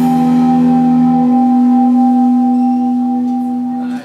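Electric guitar and bass holding a final chord at the end of a live rock song, ringing out steadily with no drums. A lower note drops out about a third of the way in, and the sound cuts off suddenly at the end.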